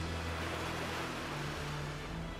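Ocean waves and surf washing, swelling in the first second and then easing off, over low held music notes.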